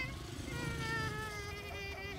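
A young child's voice in a long, drawn-out whining cry: one held note that slowly sinks in pitch, over a low rumble.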